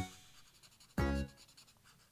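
Tip of a Winsor & Newton Promarker alcohol marker scratching faintly on paper as it colours in. Two notes of background music sound over it, one at the start and one about a second in, each fading quickly.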